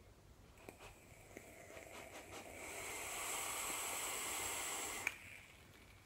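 A vape being drawn on: a few faint clicks, then a steady airy hiss of air pulled through the atomizer, with a thin whistle, lasting about two and a half seconds and ending in a sharp click about five seconds in.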